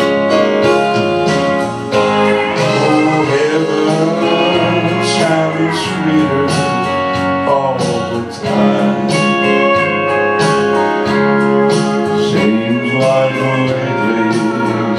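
Man singing a gospel song over instrumental accompaniment, with long held and sliding sung notes.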